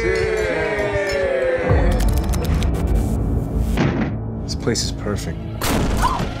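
Film trailer soundtrack: music with a low rumble, a quick cluster of sharp knocks and thuds in the middle, and a loud hit just before the end.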